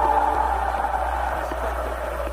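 The end of an old 1959 Korean trot song recording fading out: the final held note has died away, leaving a hiss that fades steadily, with a faint click about once a second.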